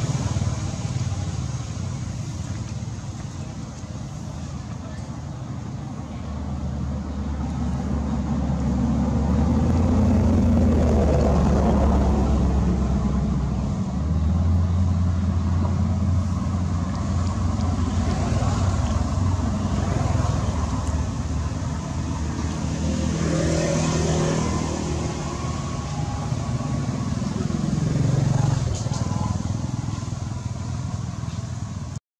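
Steady low rumble of motor-vehicle engines, swelling and easing several times, with faint voices under it.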